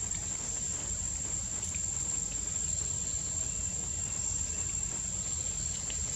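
Insects droning steadily in one unbroken high-pitched tone, over a steady low rumble, with a few faint ticks.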